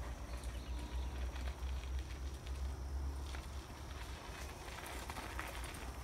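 Low wind rumble on the microphone outdoors, with a mountain bike's tyres crunching and crackling over a dirt trail as the bike rides up; the crunching clicks grow thicker over the last second or so as it arrives.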